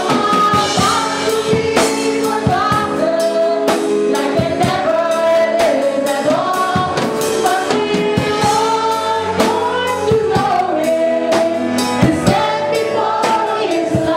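A woman's amplified voice leads a Christmas carol through a microphone, over a steady drum-kit beat, with a congregation singing along.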